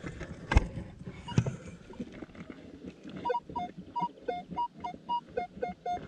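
Minelab X-Terra Pro metal detector sounding a target over a freshly dug hole, after a couple of knocks. It gives short beeps, about three a second, alternating between a higher and a lower tone: the target is still in the soil.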